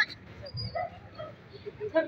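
A few faint, short whimpering yips from a small dog, over low crowd murmur.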